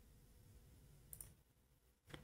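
Near silence, broken once a little over a second in by a single faint click of a computer mouse button.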